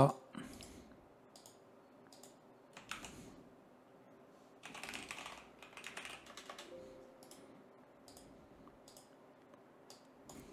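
Computer keyboard being typed on, faint, in several short bursts of keystrokes with pauses between them.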